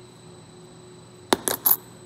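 Small silver coins slip from the fingers and clink onto other coins on a tabletop: three quick, sharp metallic clinks close together about a second and a half in.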